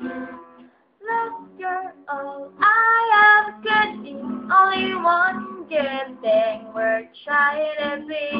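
A woman singing in short phrases to her own acoustic guitar, breaking off briefly just before the first second and then going on.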